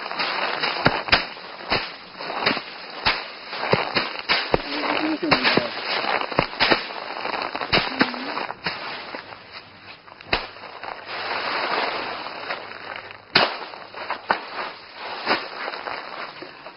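Bundles of paddy rice being beaten by hand to thresh out the grain: a run of sharp, irregular whacks with straw rustling between them.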